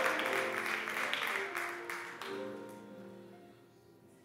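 Soft sustained keyboard chords, changing a couple of times and fading away to near silence near the end.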